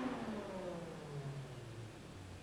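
A machine's steady hum winding down: its pitch falls smoothly and it fades over about two seconds, as a motor does when switched off.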